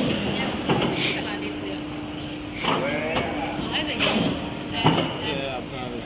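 Indistinct talking in a factory workshop, with a few short knocks and clatter and a faint steady hum in the first half.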